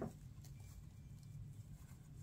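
Very quiet: a low room hum with faint rustling as a pipe cleaner is wrapped around a pinched burlap ribbon bow.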